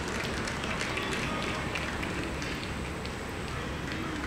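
Outdoor ballfield ambience: a steady noise bed with faint, distant voices of players and spectators.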